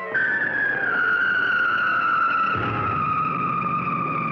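Cartoon falling sound effect: one long whistle tone that slides slowly downward in pitch. A low rumbling noise joins about halfway through.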